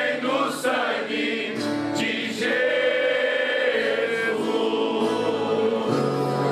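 Men's choir singing a gospel song, holding one long note through the second half.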